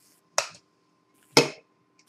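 An egg struck twice against a hard edge to crack its shell: two sharp taps about a second apart, the second louder.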